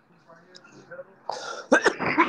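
A man clearing his throat: a breathy rasp about halfway through, then a couple of sharp hacks just before speech resumes. The first second is faint.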